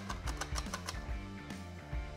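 Background music, with a quick run of clicks in the first second from a jalapeño being slid over a plastic mandoline slicer.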